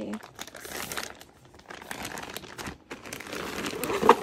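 Thin clear plastic packaging bag crinkling unevenly as hands handle it and pull it open.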